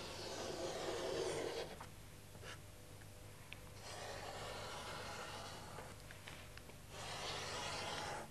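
Faint scratchy strokes of a dark drawing stick on drawing paper, coming in three short spells with quieter pauses between them.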